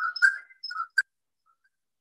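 Short, steady, whistle-like tones at a fixed pitch, then a single click about a second in, after which the audio cuts out to dead silence.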